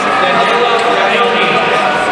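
Crowd of many voices talking at once in a large arena, a steady murmur with no single voice standing out.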